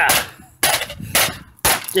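Hammer striking a laptop's cracked screen: three sharp blows about half a second apart.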